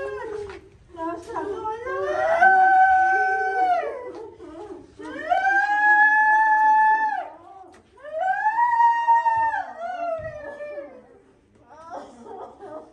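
A person wailing in grief: three long, high cries, each rising, holding and then falling away, with a lower voice wavering underneath.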